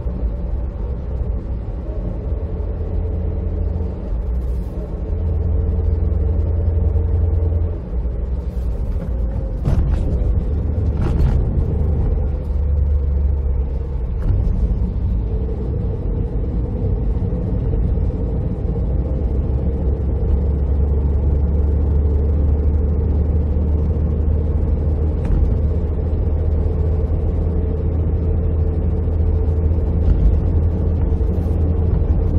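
Cabin noise of a Toyota TownAce van driving on Dunlop Winter Maxx SV01 studless winter tyres: a steady, loud low rumble of road and tyre noise with a humming engine drone that shifts in pitch a couple of times. A few short knocks sound about ten seconds in.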